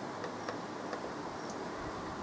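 Steady faint room hiss with a few small scattered ticks as a finger works and lets go of the buttons on a handheld Peak Atlas DCA component analyser.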